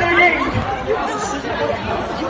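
Several people talking over one another, crowd chatter with no music playing.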